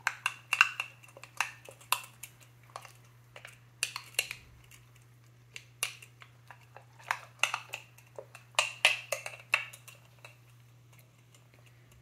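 Metal spoon clinking and scraping against the inside of a glass clip-top jar while stirring a thick oat and yogurt mixture: irregular clinks, a few to several a second, that die away about ten seconds in.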